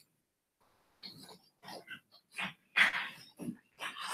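Faint, distant speech and murmurs in a meeting room, beginning about a second in after a moment of near silence.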